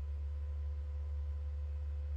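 A steady low hum, with a faint thin higher tone above it.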